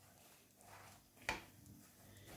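Near silence, with a faint rustle and then one brief, sharp knock a little past halfway through.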